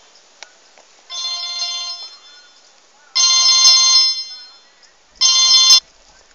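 Mobile phone ringtone playing for an incoming call: a bright electronic tune in three separate bursts, the second longest and the last two loudest.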